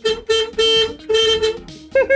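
Horn of a London double-decker bus sounded from the driver's cab in four short honks of one steady pitch, the last a little longer, during the first second and a half.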